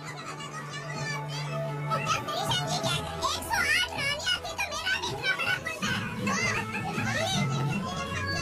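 A crowd of women chattering, laughing and calling out over each other, with music playing underneath.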